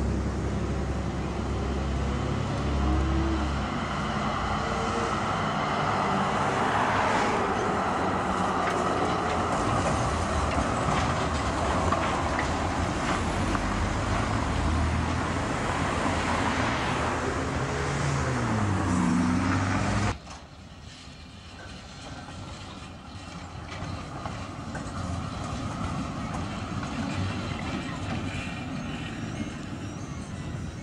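Road traffic close by: cars passing with a tram running along the street, with the pitch of passing vehicles gliding down and up shortly before the sound cuts off suddenly about two-thirds of the way through. A much quieter, steady outdoor background follows.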